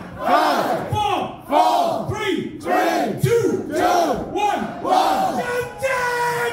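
Concert crowd chanting in rhythm: a run of rising-and-falling shouts about once a second, one after another. A steady instrument note comes in near the end.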